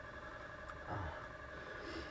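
Quiet room tone with a faint steady hum, broken by a man's short 'uh' about a second in.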